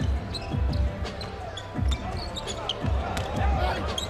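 Basketball dribbled on a hardwood court: a string of low, irregularly spaced thuds, with a quicker run of bounces in the last second, over steady arena background noise.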